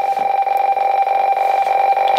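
Radioteletype (RTTY) signal from a shortwave receiver's speaker: a steady keyed tone with a rapid, even flutter. It carries the repeating RY test pattern, which is taken to mean the station is idling.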